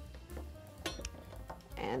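A few faint knocks of a knife cutting dried figs on a wooden cutting board, over quiet background music.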